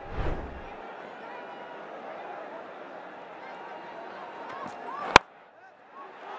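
A short broadcast transition whoosh, then a steady stadium crowd murmur, and about five seconds in a single sharp crack of a cricket bat striking the ball.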